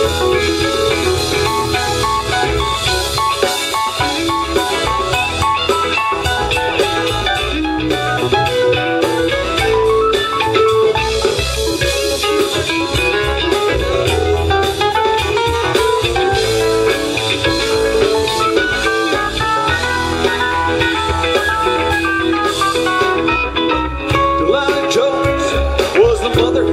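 Live rock band playing an instrumental break: a lead guitar plays running melodic lines over bass and a drum kit.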